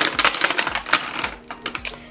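Plastic lip gloss tubes clicking and clattering against each other and the acrylic drawer as a hand sorts through them: a quick run of light, irregular clicks that thins out after about a second and a half.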